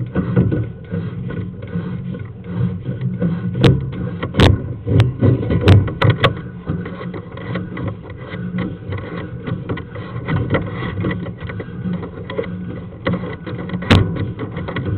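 Sewer inspection camera's push cable being pulled back out of the pipe: a continuous rough scraping and rumbling, with a few sharp clicks, most between about three and six seconds in and one near the end.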